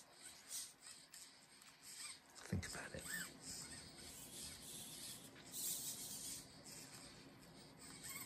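Faint whirring and rubbing from a 3D-printed, tendon-driven robot hand's servos and finger joints as the fingers move, with a brief louder noise about two and a half seconds in.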